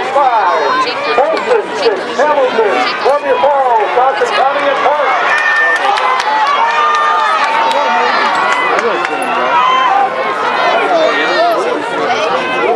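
Spectators shouting and cheering runners on during a hurdles race, many voices overlapping and yelling at once.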